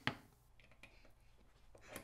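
A short click, then a few faint ticks of a small screwdriver being handled against a computer's back-panel screws; otherwise near quiet.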